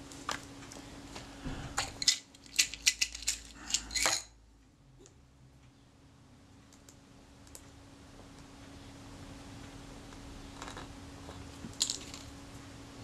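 A quick run of about a dozen light clicks and taps over roughly two seconds, from small hand tools and cotton swabs being picked up and handled on a workbench. Quiet room tone with a steady low hum follows, with a couple of faint clicks near the end.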